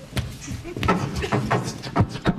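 Beatboxing: clicks and short voiced sounds made with the mouth, starting a vocal jingle.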